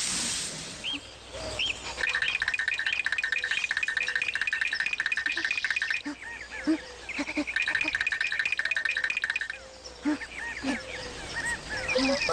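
Cartoon background music: a rapid, repeating staccato figure of short high notes in two runs, with a break about halfway and a few soft low notes between them.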